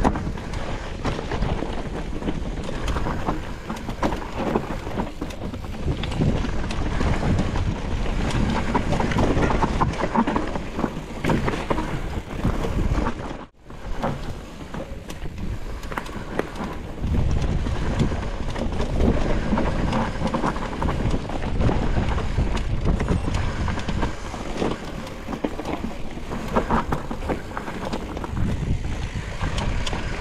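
Wind buffeting an action camera's microphone over the noise of a mountain bike riding a rough dirt singletrack: tyres on the ground and the bike rattling. The sound drops out briefly about halfway.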